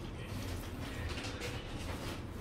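A lemon half squeezed by hand, its juice dripping onto fish in a pot, heard faintly over a steady low hum.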